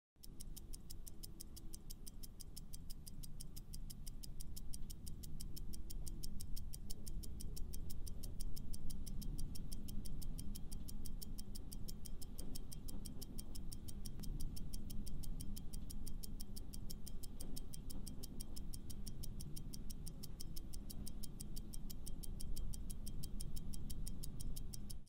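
Clock-ticking countdown sound effect: a steady, fast, even ticking over a low background music bed, marking the time to answer a quiz question.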